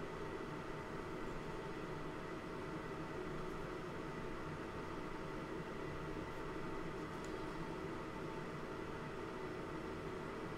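Steady background hiss with a low, even hum and no distinct events, apart from a faint tick about seven seconds in.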